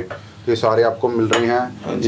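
Metal aerosol deodorant cans clinking against each other and the shelf as they are handled and set back down, with a man talking over them.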